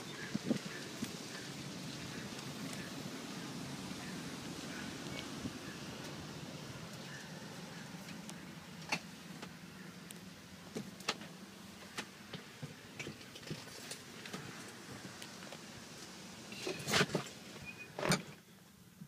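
Someone climbing into a truck cab and handling things inside: scattered knocks and clicks, with a louder cluster near the end, over a faint steady low hum that fades as it goes.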